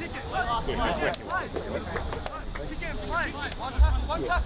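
Several people's voices calling out and talking at once, with a short low thump a little before the end.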